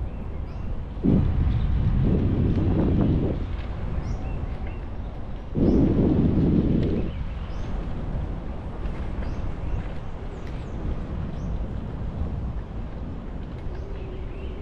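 Wind rumbling on the microphone, swelling louder twice, with faint short bird chirps above it.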